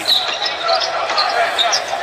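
Basketball being dribbled on a hardwood court over the steady noise of an arena crowd.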